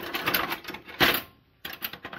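Metal hand tools clattering and scraping against each other in a steel drawer as they are rummaged through, with a sharp clack about a second in and a brief pause just after.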